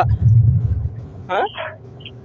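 Low rumbling background noise on a phone line, loudest in the first second, then a man's voice asking one short word over the phone.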